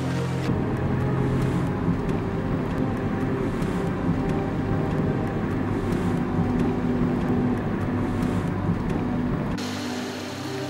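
A car running close by, a steady low rumble, with music playing underneath.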